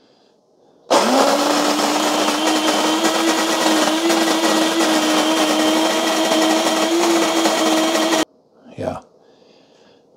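Mr. Coffee electric burr coffee grinder grinding beans. Its motor starts about a second in, spins up and runs with a steady hum for about seven seconds, then cuts off suddenly as its timer stops it.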